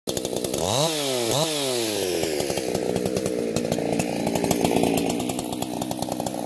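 Husqvarna 181 two-stroke chainsaw revved in two quick blips about a second in, each rising and falling in pitch, then dropping back to a steady idle.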